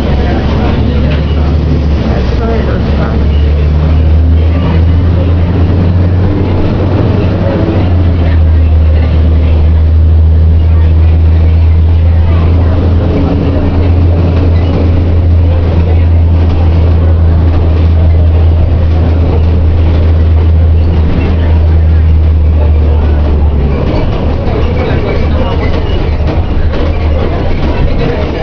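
Metroplus bus engine running under way, heard from inside the passenger cabin as a loud, deep, steady drone that grows stronger about four seconds in and eases off near the end. Faint passenger voices are mixed in.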